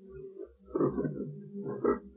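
Faint, low voice sounds from a man pausing between phrases of a talk, on an old tape recording processed with heavy noise reduction that leaves a patchy high hiss.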